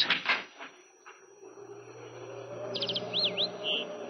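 Sound effect of a door opening onto a garden: a faint click or two, then outdoor ambience swells with birds chirping and giving curving whistles over a low steady hum.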